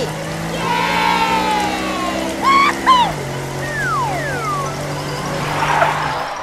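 Edited-in cartoon sound effects: a held low musical note that steps down in pitch about halfway, with whistle-like tones sliding down in pitch over it.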